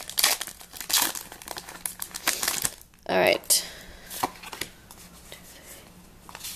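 Foil wrapper of a Pokémon trading-card booster pack crinkling and tearing as it is torn open by hand, densest over the first three seconds. A short vocal sound follows about three seconds in, then a few faint rustles.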